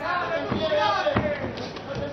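Men's voices calling out in a boxing arena during a round, with a couple of short dull thuds, about half a second and a second in.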